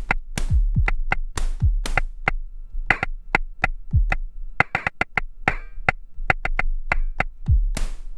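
Drum pattern played on an Axoloti Core synthesized drum patch: kick drums whose pitch drops sharply, with short, clicky, chirping percussion hits between them. A steady low hum runs underneath, which the player blames on ground loop noise from the Arturia BeatStep Pro.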